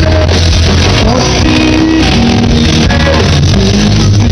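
Live rock band playing loud: electric guitars over a heavy, steady bass, with a held melody line on top.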